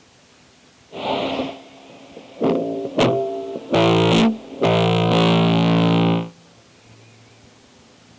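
Distorted electric guitar playing a few separate chords. The last chord is held for about a second and a half and then stops suddenly, leaving faint hiss.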